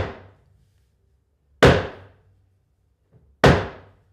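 Three loud hammer bangs about two seconds apart, each dying away quickly with a short ring.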